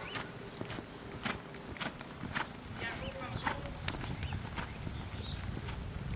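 Hoofbeats of a reining horse, irregular sharp strikes spaced a fraction of a second apart, over a steady low rumble. A brief voice is heard about three seconds in.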